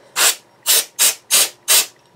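Hand rubbing strokes across the plastic hull of a scale model kit: five short, scratchy strokes, about three a second.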